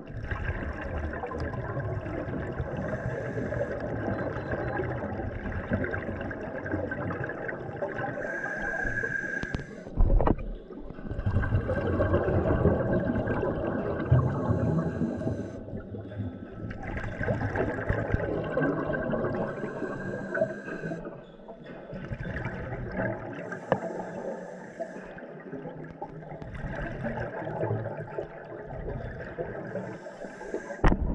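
Underwater ambience of a scuba dive: regulator exhalation bubbles come in hissing bursts every five or six seconds over a steady low rumble. A bell buoy's hammers clang constantly in the background to warn of a shoal. There is one sharp knock about ten seconds in.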